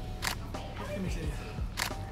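Nikon D7200 DSLR shutter firing twice, about a second and a half apart, each a short sharp click.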